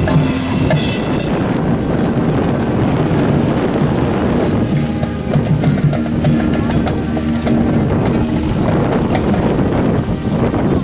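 Marching band playing a disco tune, its brass holding low sustained notes. Heavy wind noise rumbles on the microphone over the band.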